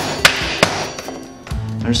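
Mallet blows on a steel socket extension driving the old BB92 press-fit bottom bracket bushing out of a carbon frame: three sharp knocks within the first second.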